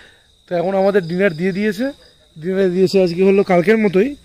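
A steady high trill of night insects such as crickets, under a person talking loudly close by.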